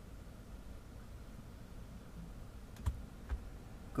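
Two short clicks of the BMW E60's iDrive controller knob, about half a second apart near the end, over a faint low hum in the parked car's cabin with the ignition on and the engine off.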